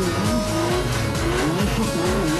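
Guitar-backed music over a car's engine as the car rolls slowly by.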